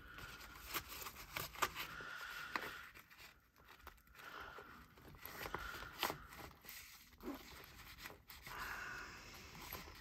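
Faint rustling and scraping of an Alpaka Hub pouch's fabric and elastic pen loops as a metal pen is worked down into a pen slot, with a few small sharp clicks along the way.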